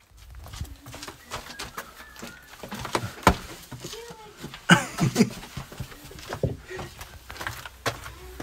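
Scrambling on rock in a narrow stone passage: irregular knocks and scuffs of feet and hands on stone, the loudest cluster about five seconds in, with brief vocal noises and close bumps against the phone.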